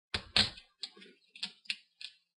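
Fingertips picking at a laptop LCD panel's video cable connector and its adhesive tape: about six sharp, irregular clicks and ticks, the second one the loudest.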